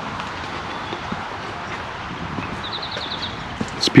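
Footsteps on a dirt bush track over a steady noisy rush, with a bird giving a quick run of about seven high chirps near the end.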